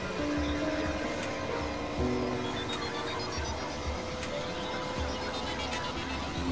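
Experimental electronic synthesizer music: sustained drone tones that shift pitch in steps over recurring low pulses, with a run of high stepped notes climbing in the middle.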